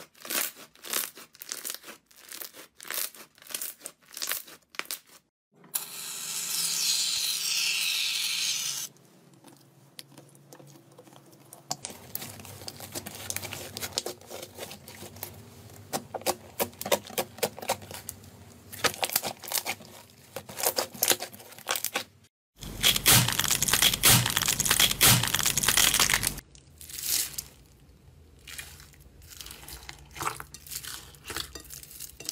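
Hands squeezing, pressing and poking slime: a quick run of sticky clicks and pops, then other slimes with softer squelching and two louder stretches of dense crackling.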